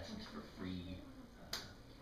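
A man talking in a small room, with a single sharp click about one and a half seconds in.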